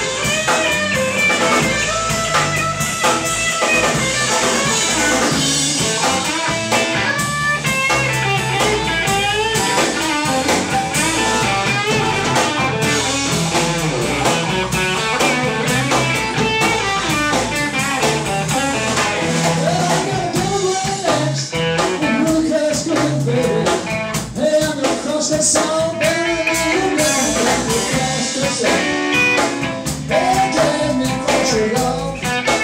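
Live blues-rock trio playing an instrumental passage: electric guitar playing a lead line with bent, wavering notes over bass guitar and a drum kit.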